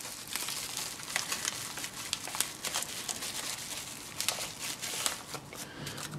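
Plastic bubble-wrap packaging crinkling and rustling in the hands as it is opened and pulled off a small electronic device, a dense run of small crackles.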